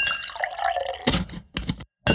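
Cartoon sound effects: a watery, dripping sound with a rising bloop, then a few soft knocks and a short break in the sound just before the end.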